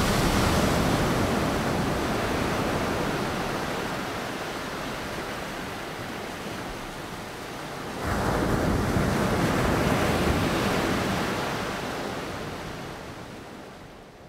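Ocean surf: a steady wash of breaking waves that fades down, then a louder wash comes in suddenly about eight seconds in and fades out again near the end.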